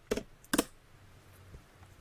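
Computer keyboard keystrokes, about three sharp key clicks in the first half second or so as the last digit of a number is typed.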